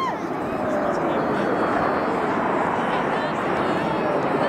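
Jet roar from the Red Arrows' formation of BAE Hawk T1 trainers, a steady rushing noise with faint falling tones, mixed with people talking.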